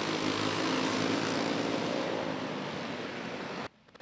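Winged outlaw dirt karts' small engines running at racing speed in a steady, hazy drone that slowly fades, then cuts out suddenly near the end.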